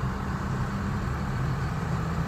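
Steady engine hum and road noise heard inside the cabin of a car driving along a highway.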